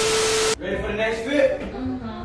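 TV-static glitch transition sound effect: a burst of hiss with a steady beep underneath, cut off sharply about half a second in.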